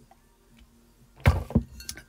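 A brief clink and clatter of hard plastic on the craft desk as a clear plastic tub is grabbed, a sudden knock about a second in followed by a couple of lighter ticks.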